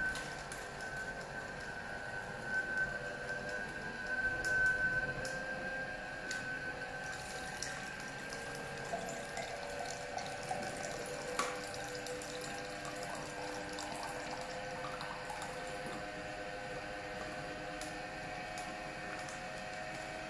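Slow juicer running with a steady motor whine while it presses almonds. About halfway through, almond milk runs from its spout into a glass.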